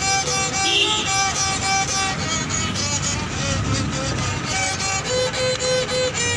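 A small wooden fiddle bowed in a simple melody of short notes, several repeated on the same pitch.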